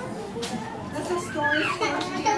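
Overlapping chatter of young children and adults talking over one another, with a brief click about half a second in.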